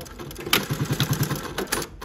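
A Juki LU-2860-7 double-needle walking-foot industrial sewing machine stitches a short run through denim, with a quick, even pulse of needle strokes, about a dozen a second. It then stops with a few sharp mechanical clicks.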